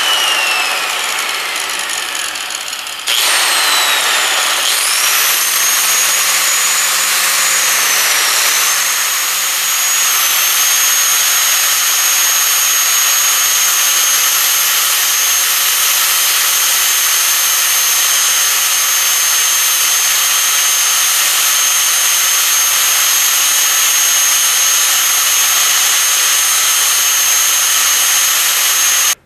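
Angle grinder winding down, then switched on again about three seconds in and spinning up to a steady high whine. Its pitch sags briefly about eight seconds in as the disc bites into the protruding tip of a 6 mm screw, and it keeps grinding the screw down flush with its nut.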